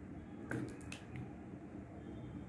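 Thick curd sliding out of a small steel bowl onto flour, with a faint soft squelch. A few light clicks come about half a second and one second in.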